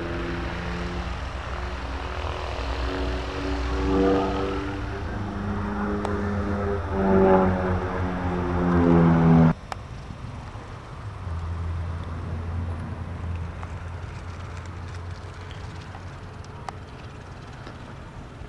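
Propeller-driven aerobatic biplane flying overhead, its piston engine changing pitch and swelling through the manoeuvres, loudest near 4, 7 and 9 seconds. It cuts off suddenly about halfway through, and a quieter, lower engine drone from a light aircraft on the ground follows.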